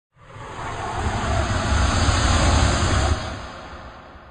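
A swelling rush of noise with a deep rumble underneath, loudest two to three seconds in, then dropping suddenly and fading away.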